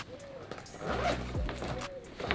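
Zipper and fabric of a baseball bat backpack being worked as its pocket is rummaged through, scratchy and uneven in the middle, over background music with a steady bass.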